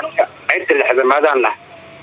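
A man speaking, with a radio-like quality, pausing briefly near the end.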